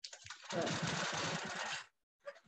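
Handi Quilter quilting machine stitching: a fast, even run of needle strokes that starts about half a second in and stops abruptly just before the end.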